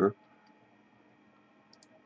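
Two faint computer mouse clicks close together near the end, over a low steady room hum.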